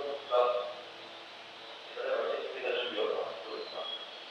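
A man's voice speaking: a short phrase about half a second in, then a longer stretch of speech from about two seconds in until near the end.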